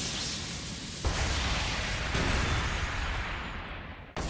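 Animated-battle sound effects of two spinning battle tops clashing: a continuous rush of noise, joined about a second in by a sudden deep, explosion-like rumble that carries on and fades near the end.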